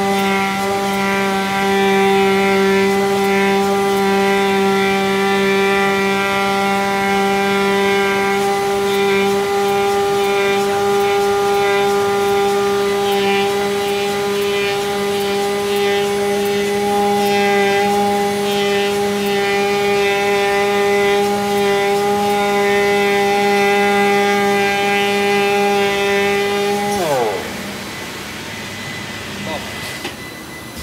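UNICO TT milling machine's spindle running at speed with a steady, high machine whine as it cuts closed-cell foam. About three seconds before the end the whine falls sharply in pitch and fades as the spindle spins down when the cut is finished.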